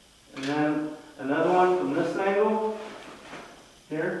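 A man's voice making two drawn-out sounds without clear words, the first about a second long and the second, longer one rising slightly in pitch.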